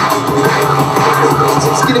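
Drum and bass music playing loud and steady.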